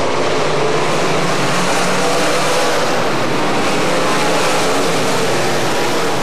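A pack of sportsman dirt late model race cars with V8 engines, racing together at speed. Their engines blend into a steady, loud noise with several overlapping pitches.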